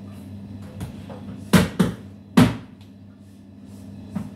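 Three slapping thuds of pizza dough balls being slapped down on a stainless steel worktable, two close together about a second and a half in and a third a little later, over a steady low electrical hum.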